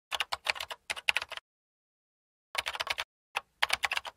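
Computer keyboard typing: quick key clicks in spells, a run of about a second and a half, then a silent pause, then shorter runs near the end.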